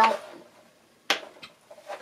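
A woman's voice trails off on a word, then a short pause broken by a brief sharp click about a second in.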